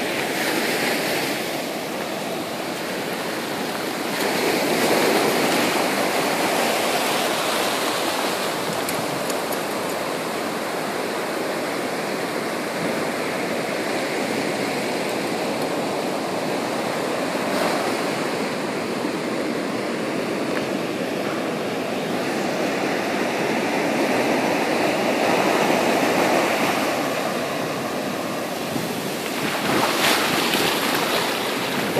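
Ocean surf washing up a sandy beach: a steady rush of breaking waves and spreading foam, swelling louder twice as waves surge in.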